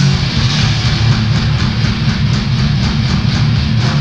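A grindcore band playing live: distorted electric guitars and bass over fast drumming.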